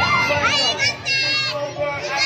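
Children's voices shouting and squealing in high pitches, with a rising call early on and several shrill cries after it.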